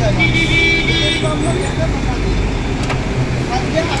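Road traffic running close by, with a vehicle horn sounding for about a second near the start and a single sharp click about three seconds in.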